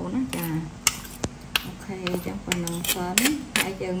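A metal spoon clinking and scraping against a stone mortar and a ceramic bowl as pounded fish is scooped out: a quick, irregular series of sharp clicks.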